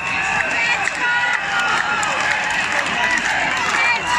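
A crowd applauding and cheering, many voices shouting at once over steady clapping.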